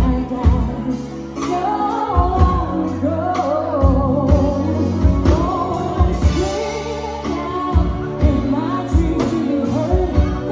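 Live band playing a pop ballad through a PA, a woman singing a gliding lead melody over drums, electric guitars and keyboard, with the drum hits landing at a steady beat.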